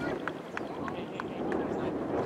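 Outdoor soccer-field ambience: faint voices of players and spectators calling across the pitch over a steady background hum of the field, with a few short, sharp clicks.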